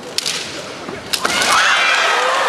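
Bamboo shinai striking during a kendo exchange: two sharp cracks about a second apart. Right after the second, loud shouting rises and carries on.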